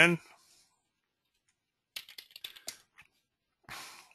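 Computer keyboard typing: a short quick run of key clicks, entering a stock ticker symbol to call up a chart.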